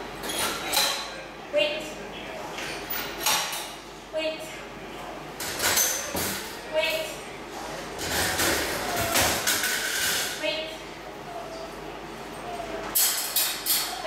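Wire doors on plastic dog crates being unlatched and swung open one after another, with repeated metal clinks and rattles, among short pitched calls from the dogs inside. The clanking is busiest about two-thirds of the way through.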